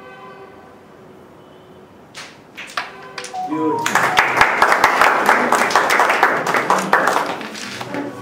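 A few sharp clicks, then a short run of rising notes, then a burst of applause lasting about three and a half seconds that is the loudest part and fades near the end.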